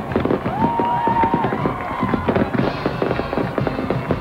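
Fireworks going off: a dense run of crackling pops and bangs, with a whistling tone that starts about half a second in and holds for about a second.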